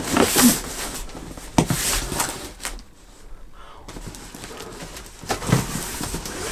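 A large cardboard shipping box being handled and lifted, with scraping rustles and a few dull knocks; the sharpest come about a second and a half in and again near the end.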